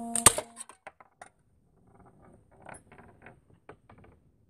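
A hanging metal slingshot target rings with a steady tone, then a sharp metallic impact about a quarter second in cuts the ringing off. Light metallic clicks and clinks follow.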